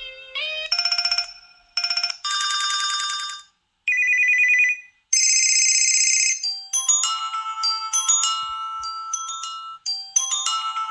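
Preloaded ringtones of an HTC Inspire 4G phone playing through its speaker, previewed one after another: a series of short electronic ring tones, several of them fast warbling trills like a phone bell, each cut off abruptly as the next is tapped. In the last few seconds a tinkling melody of overlapping bell-like notes plays.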